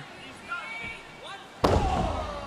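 A wrestler landing a splash on his opponent on the wrestling ring about one and a half seconds in: one sudden heavy boom from the ring boards and canvas, ringing on briefly after the hit.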